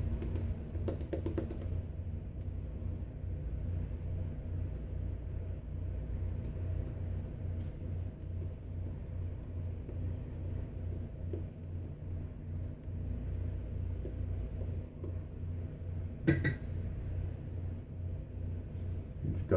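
Shaving brush working soap lather over the face in rhythmic strokes, with a wet crackle of lather most audible in the first couple of seconds. A single sharp knock sounds about sixteen seconds in.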